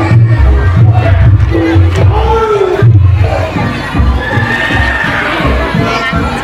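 Live Javanese gamelan accompaniment for a jathilan (kuda lumping) horse dance, with heavy low drum and gong beats under a wavering melody line, mixed with crowd cheering and shouting that swells about four seconds in.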